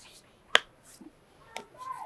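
A single short, sharp click about half a second in, with a few faint small clicks and rustles near the end.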